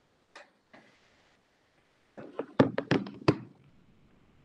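A quick run of sharp knocks and clicks, about seven in just over a second, starting a little past two seconds in, after two faint taps earlier on.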